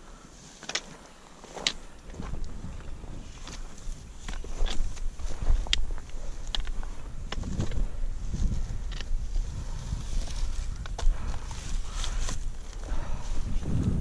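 Footsteps on loose, rocky ground and the tip of a trekking pole clicking against stones on a steep climb, a sharp click every second or so.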